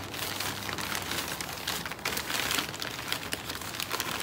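Crumpled brown kraft packing paper rustling and crinkling as it is pulled apart by hand, a steady run of small crackles.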